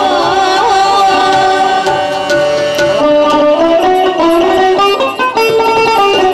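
Live Baul folk music: a woman singing with harmonium, bamboo flute and hand drum, the melody carried by the instruments in the later part.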